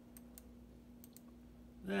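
Computer mouse clicking four times, in two quick pairs about a second apart, over a steady low hum.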